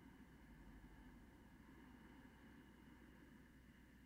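Faint Ujjayi breathing: one long, slow breath drawn through a narrowed throat, making a soft ocean sound.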